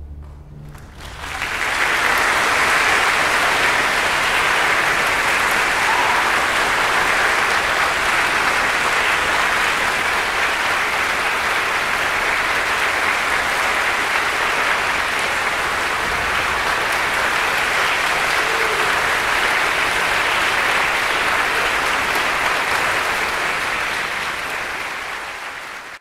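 The last low string-orchestra notes die away, then audience applause swells about a second in. It holds steady and tapers off near the end.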